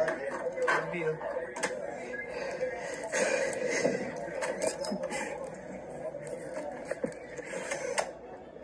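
Indistinct talking from a video playing through a tablet's small speaker, with a few light clicks.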